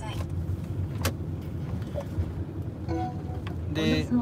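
Steady low road and engine rumble heard inside a moving car's cabin, with a single sharp click about a second in and a brief vocal murmur near the end.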